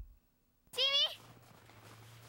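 A child's voice giving one short, high-pitched rising call about a second in, followed by a low steady hum.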